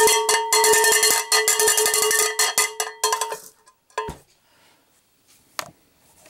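Cowbell rung rapidly, a fast clatter of strokes over its ringing tone, for about three and a half seconds before it stops and dies away. A single knock follows about half a second later.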